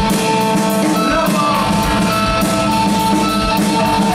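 Live punk rock band playing an instrumental passage without vocals: electric guitar, bass and drum kit, with cymbals struck several times a second.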